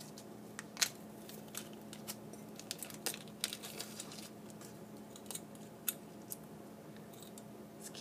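Thin clear plastic bag crinkling and rustling as a small keychain is handled and pulled out of it, with scattered sharp clicks and ticks throughout, the loudest about a second in.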